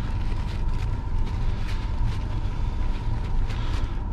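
Steady low mechanical rumble with a faint constant hum over it, and a few light rubbing strokes.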